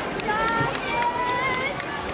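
High children's voices calling out and chattering, one held, slightly rising call about halfway through, over a scatter of sharp clicks and knocks.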